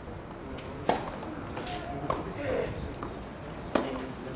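Two sharp strikes of a tennis racket on the ball, about a second in and again near the end.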